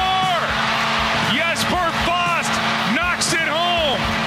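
Radio promo audio: a voice shouting or singing in short, arching phrases over a music bed with a steady held low note.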